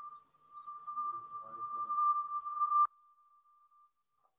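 A steady high-pitched electronic tone that grows louder over about two seconds and cuts off suddenly near three seconds in, leaving a faint trace of the same tone. Faint voices sound under it in the middle.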